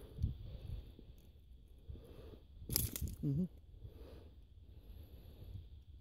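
Faint scuffing and rustling handling noise on a body-worn camera as the wearer shifts his footing on rock, with one sharp crunch about three seconds in, followed by a brief voice.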